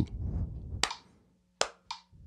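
Hand claps tapping out a rhythm: one sharp clap a little under a second in, then two more close together near the end.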